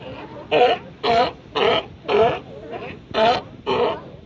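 California sea lions barking in a quick series of about six barks, roughly two a second.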